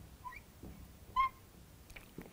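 Marker squeaking on a glass lightboard while writing: two short high squeaks, a faint one soon after the start and a louder one just after a second in.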